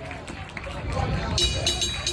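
Crowd chatter and a short laugh, then about two-thirds of the way through a drummer starts a rapid, even pattern on the hi-hat cymbals, several strokes a second, opening the song.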